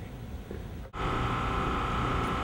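Low, steady outdoor rumble; about a second in the sound cuts abruptly to a louder steady hiss carrying one constant high whine.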